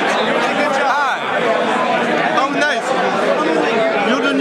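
Party crowd chatter: many people talking at once in a large room, a steady hubbub of overlapping voices.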